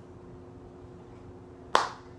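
A single sharp snap near the end, dying away quickly, over a steady low hum.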